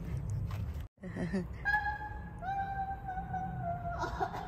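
A woman's voice singing two long, high held notes, the second a little lower and held longer, after a brief break in the sound about a second in.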